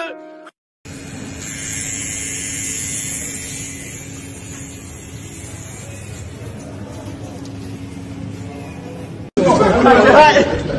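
Steady background room noise with a low hum and faint indistinct voices. It is cut off near the end by loud, overlapping voices.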